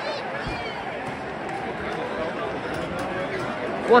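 Football stadium crowd murmuring and chattering, many overlapping voices at a steady level with no single voice standing out.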